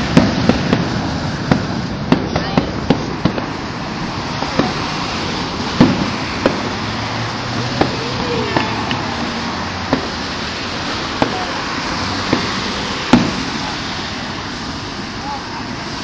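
Fireworks going off: a dozen or so sharp bangs and pops at irregular intervals, closer together in the first few seconds, the loudest about six and thirteen seconds in, over a steady background hubbub.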